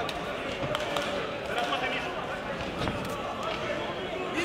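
A few sharp thuds from a kickboxing bout in the ring, over indistinct voices of the people in the hall.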